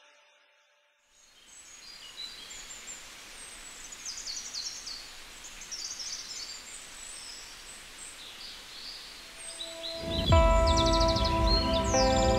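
Small birds chirping in short calls over a steady outdoor hiss. About ten seconds in, loud music comes in suddenly with sustained chords.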